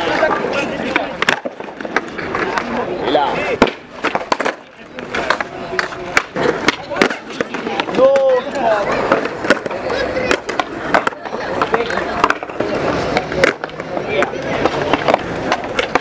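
Skateboards on a concrete flatground: urethane wheels rolling, with repeated sharp clacks of tails popping and boards landing throughout. Voices are heard now and then, one about eight seconds in.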